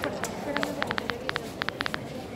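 A low voice speaking in the cathedral's stone interior, with a quick run of sharp clicks in small clusters of two or three.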